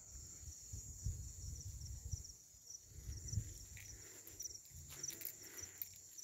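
Night insects, crickets, chirping faintly in a steady, high-pitched pulsing trill, over a low, uneven rumble.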